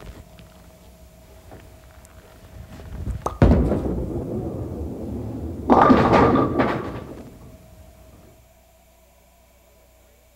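A bowling ball lands on the wooden lane with a sharp thud a little over three seconds in and rolls with a steady rumble for a couple of seconds, then hits the pins with a loud clattering crash that dies away over about two seconds.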